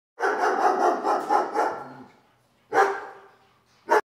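A dog barking: a rapid run of barks over about two seconds, then a single bark, and another short bark at the very end.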